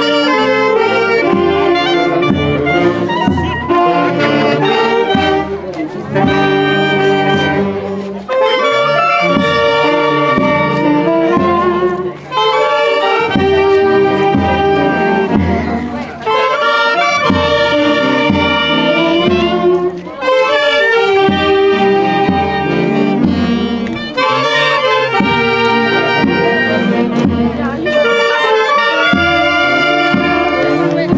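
A festive Andean street band, with saxophones and brass leading over a drum, playing a tune in repeating phrases about four seconds long over a steady beat.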